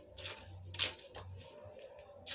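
A hand mixing fine sand into damp clay soil in a bucket: a few short gritty rustles and scrapes, the loudest a little under a second in.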